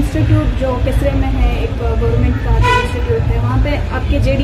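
Background ambience: a steady low rumble with faint voices of people talking nearby.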